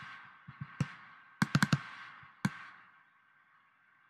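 Sharp clicks of a computer mouse and keyboard: a single click, then a quick run of four, then one more about two and a half seconds in, each followed by a short fading hiss.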